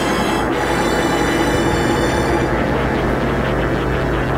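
Dark, eerie electronic synthesizer soundtrack music: a steady low drone under a dense, noisy texture, its high hiss thinning out about halfway through.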